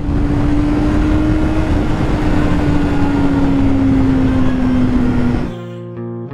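Yamaha YZF-R6's 600cc inline-four engine running at a steady freeway cruise under heavy wind and road rush, its note slowly dropping in pitch. About five and a half seconds in it cuts off abruptly and guitar music takes over.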